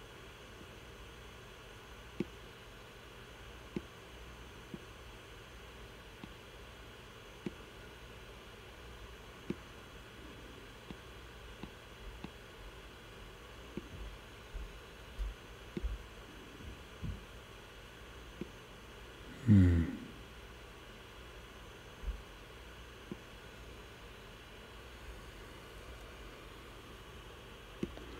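Scattered light taps and clicks of a stylus on an iPad screen over a faint steady computer-fan hiss, with one brief low murmur of voice about two-thirds of the way through.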